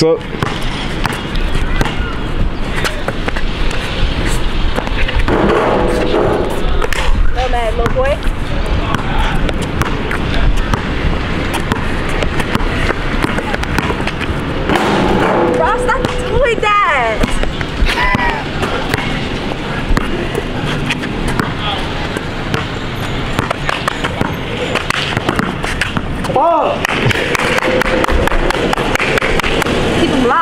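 Basketball bouncing on an outdoor hard court during one-on-one play, with scattered thuds and footsteps over a steady background of noise and voices.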